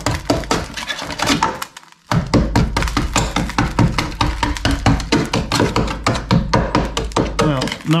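A screwdriver jabbing and scraping at a rusted steel sill on a classic Mini: a fast run of sharp clicks and knocks as corroded metal and thick underseal break away and flakes drop to the floor. The sound stops briefly just before two seconds in, then carries on over a low steady hum.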